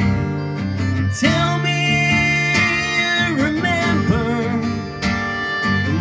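Acoustic guitar strummed live, with a man's voice singing over it from about a second in, sliding between notes.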